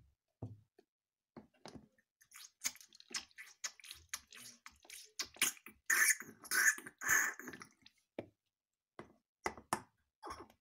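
Wet squelching and dripping of juice being fed from a toy bottle into a baby doll's mouth, with small clicks of the plastic bottle against the doll, and a louder wet run about six seconds in.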